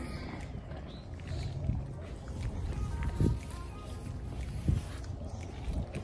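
Low rumble of wind on a handheld phone microphone while walking, with knocks of handling about every second and a half. Faint background music runs underneath.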